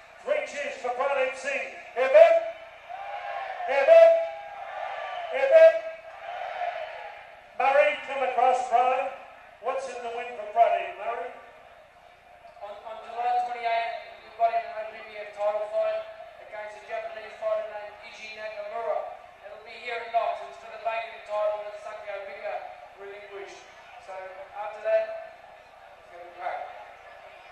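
A man speaking into a microphone in the ring, thin and muffled so that the words are hard to make out.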